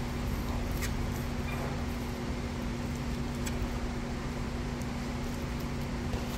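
Steady mechanical hum of a fan or air-conditioning unit, with a low, even tone, and a couple of faint clicks.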